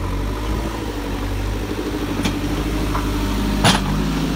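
JCB 3CX backhoe loader's diesel engine running steadily as the machine moves with its front bucket loaded, with one brief knock near the end.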